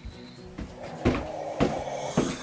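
Footsteps along a hallway floor: short thuds at a regular pace of about two a second.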